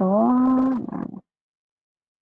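A woman's voice drawing out one long syllable, a hesitation sound, that rises slightly in pitch and trails off after about a second.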